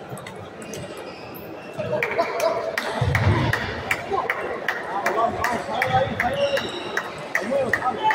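Table tennis balls clicking off tables and rackets in an irregular stream of sharp ticks, from this table and neighbouring ones, in a large hall. Voices talk underneath from about two seconds in.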